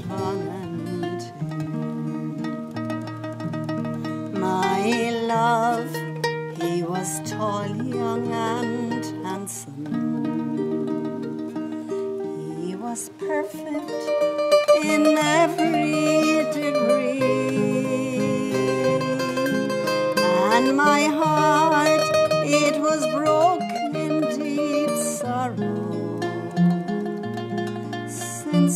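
A woman singing a slow Irish ballad in long, held phrases with vibrato, accompanied by a plucked mandolin and a strummed acoustic guitar.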